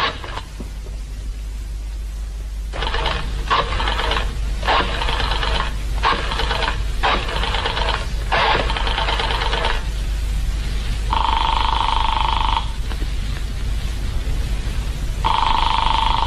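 Telephone call sound effect: a number being dialled, heard as a run of short clicks over several seconds, then the ringing tone on the line, two rings about four seconds apart. A steady low hum runs underneath.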